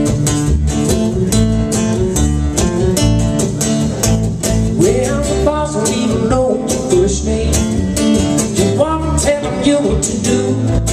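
Live acoustic guitar strumming a steady upbeat rhythm over an electric bass guitar line. About halfway through a voice comes in with sliding, wordless pitches above the strumming.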